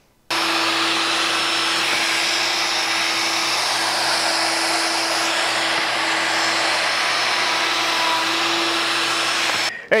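Festool plunge router running steadily at full speed in a router-sled board mill, surfacing a wood slab, with its dust extractor drawing air through the hose. The sound starts abruptly just after the beginning and cuts off suddenly near the end.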